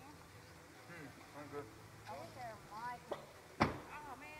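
Distant, unintelligible voices of people talking, with one sharp knock a little before the end.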